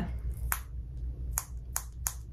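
Three short, sharp clicks: one about half a second in and two more close together near the end, over a faint low steady hum.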